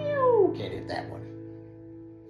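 A man's sung note breaks into a steep downward slide of the voice, followed by two short breathy bursts, while the last strummed acoustic guitar chord rings on and slowly fades.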